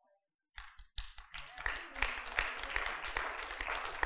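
Congregation applauding: many hands clapping, starting about a second in and running on steadily at a modest level.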